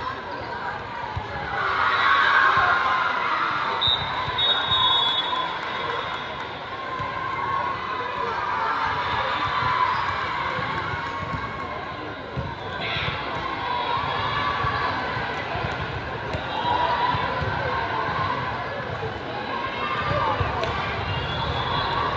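Echoing ambience of a busy sports hall: many voices chattering and calling, with volleyballs bouncing on the court floor now and then.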